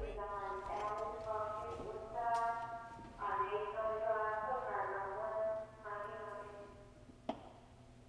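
Indistinct speech inside a fire truck cab over a steady low hum, with one sharp click a little after seven seconds in.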